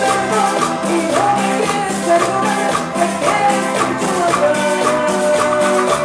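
Live band playing upbeat Latin dance music, with a steady percussion beat and a melody line sliding between notes.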